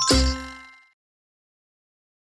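A single bell-like chime closing a short musical logo jingle, struck once and ringing out, fading away within about a second.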